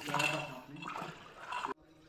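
Water splashing and sloshing as a snake hook is worked through well water, with voices mixed in; the sound drops away suddenly near the end.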